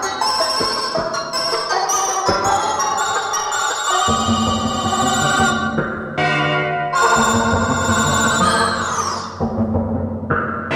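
Mixtur-Trautonium electronic music: a quick run of short, bright notes, then from about four seconds in a held low tone under higher sustained notes, with a falling glide in the high notes near the end.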